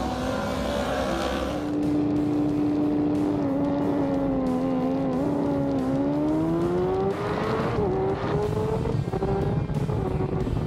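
Racing motorcycle engine heard from an onboard camera: held at fairly steady revs for a few seconds, then revving up as the bike accelerates, with a short drop in pitch at each gear change, about two seconds into the climb and again near the end.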